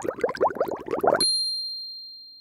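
Editing sound effects: a quick run of short rising bloops, about six or seven a second, cut off about a second and a quarter in by a bright bell-like ding that rings on and slowly fades.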